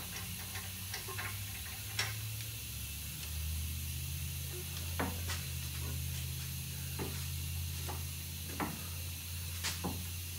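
Scattered short metallic clicks and knocks, about seven in all, as suspension parts and a long bolt are handled to line up the upper control arm, over a steady low hum.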